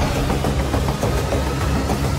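Dramatic film-score music from an action-film soundtrack, loud and dense with a heavy, deep low end.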